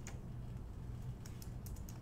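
Faint computer keyboard keystrokes: a few scattered, irregular clicks.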